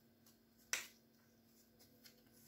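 A single short, sharp snap of a trading card being flicked against the card stack, about three-quarters of a second in; otherwise near silence.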